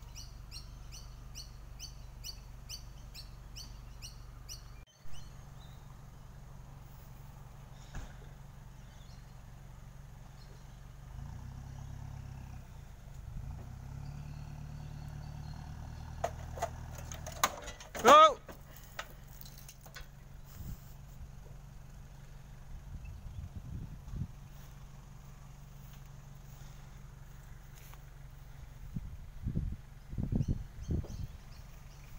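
Outdoor ambience with a steady low hum, a bird chirping in a rapid series of about three chirps a second for the first few seconds, a few scattered clicks and knocks, and one short loud vocal sound about eighteen seconds in.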